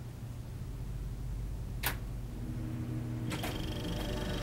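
Reel-to-reel tape recorder: a quiet steady low hum with a sharp mechanical click about two seconds in and another near the end, and a faint steady tone coming in between them.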